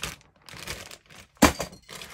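Plastic bag holding model kit sprues crinkling as it is handled, then one sharp knock about one and a half seconds in as the bagged parts are set down in the cardboard kit box.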